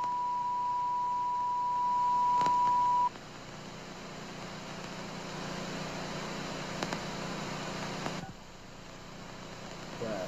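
Steady 1 kHz television test-pattern tone, the kind that accompanies colour bars. It cuts off suddenly about three seconds in, leaving a faint hiss.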